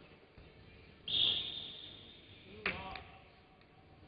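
A referee's whistle blown hard about a second in, one high piercing note that rings on in the hall as it fades. Near three seconds in there is a second, shorter sharp sound, possibly with a brief call.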